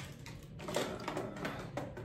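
Plastic clicks and small knocks of a Polaroid back being pushed onto a Holga toy camera's body, several sharp handling clicks as the back is worked into place without yet locking on.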